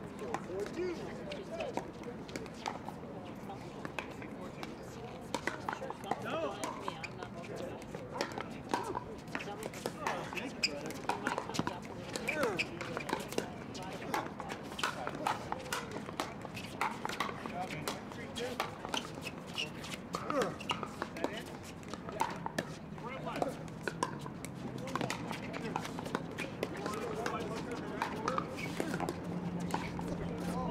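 Pickleball paddles striking the plastic ball: sharp pops, irregular and frequent, from the rally on this court and from play on neighbouring courts, over a background of distant voices.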